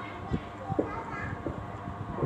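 People's voices, children's among them, with a few short, low knocks.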